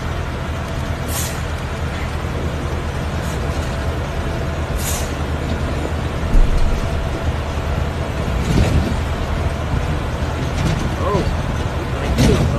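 Semi truck running with a steady low rumble, with two short air-brake hisses about a second and about five seconds in and a thump a little after six seconds. Faint voices come in near the end.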